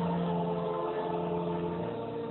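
Church organ holding sustained chords of the closing hymn, moving to a new chord near the end.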